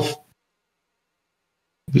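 Near silence: the voice trails off at the very start, then the sound track drops to nothing, as if gated, until talk resumes at the very end.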